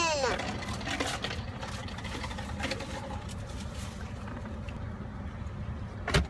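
Steady low rumble of a car's cabin, with a child's high voice sliding down in pitch and ending about a third of a second in.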